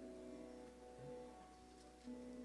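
Faint held notes of a bowed Indian string instrument with sympathetic strings, ringing on softly and thinning out to near silence near the end.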